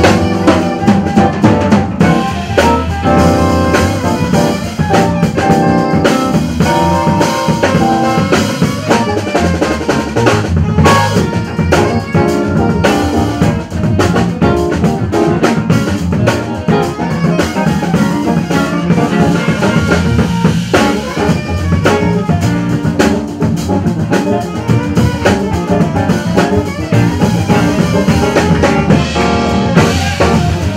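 Live jazz band playing, with drum kit and electric guitar behind an alto saxophone solo.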